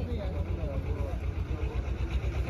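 A vehicle engine idling close by: a steady, low, throbbing rumble, with people talking quietly behind it.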